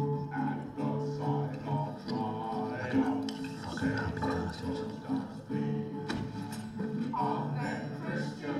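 Acoustic guitar playing with voices singing along in held phrases, film sound played back over a cinema's speakers.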